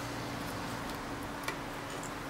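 Soft brushing of a photoresist PCB in a shallow tray of developer, over a faint steady low hum, with one light tick about a second and a half in.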